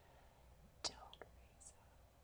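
Near silence: faint room tone with a single sharp computer-mouse click a little under a second in, a softer click just after, and a faint breathy whisper near the end.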